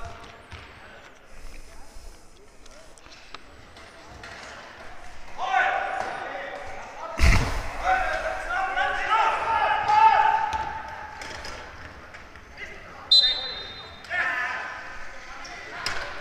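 Basketball hitting the hardwood floor of a large sports hall once, about seven seconds in, during a free-throw attempt, with a short high whistle about thirteen seconds in.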